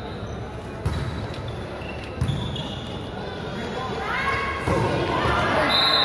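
Volleyball struck twice in a large, echoing sports hall, about one and two seconds in. Shouts from players and crowd then build, and a referee's whistle blows near the end.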